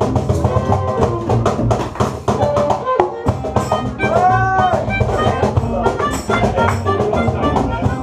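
Small acoustic band playing a Latin groove on acoustic guitar, violin and double bass, with a metal tube shaker keeping a fast rhythm. After a short break about three seconds in, a melodica comes in with held, bending notes.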